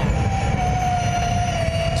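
Electric motor and drivetrain whine of a MotoE race bike (Ducati V21L), one steady high tone slowly falling in pitch, over a low rushing noise.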